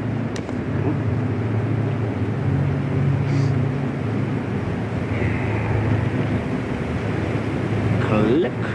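A steady low mechanical drone, like an engine running, holds evenly with no break.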